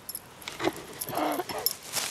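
A corgi bounding through deep snow toward the listener, its paws crunching in a run of short, irregular hits, with a brief voice-like call a little past a second in.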